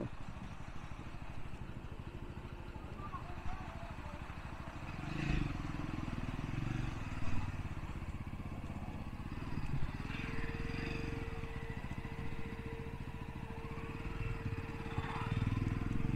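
Jawa motorcycle engine running at low, steady revs while ridden slowly. A single steady tone joins about ten seconds in and holds to the end.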